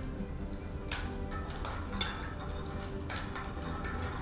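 Hollow plastic draw balls clicking and clinking against a glass bowl as they are stirred and drawn by hand, a few separate clicks, over soft background music.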